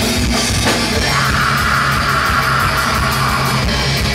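Black/thrash metal band playing live: distorted electric guitars over a fast drum kit, loud and steady, with a held higher line standing out from about a second in.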